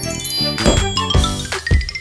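A magical sparkle sound effect: a run of tinkling chimes climbing in pitch, over children's music with a steady beat.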